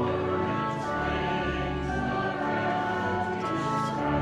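A hymn sung by voices with organ accompaniment, in sustained chords that change from one to the next.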